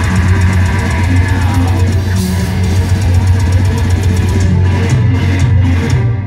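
Symphonic black metal band playing live: distorted electric guitar, bass and drum kit, loud and dense, with a few short stops in the playing near the end.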